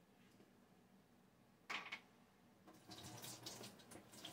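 A brief sharp noise, then faint water pouring in a thin, uneven stream from about three seconds in, as purified water is poured over a dropped piece of food to rinse it.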